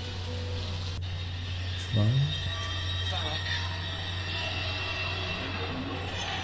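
A low, steady drone from a horror film's soundtrack, with a short voice-like sound rising in pitch about two seconds in.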